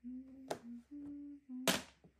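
A person hums a short tune of four held notes. Mahjong tiles click on the table: a light click about halfway through, and a loud, sharp clack near the end.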